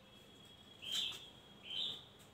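Felt-tip marker squeaking on a whiteboard while writing: two short, high squeaks, each rising slightly in pitch, about a second in and near the end.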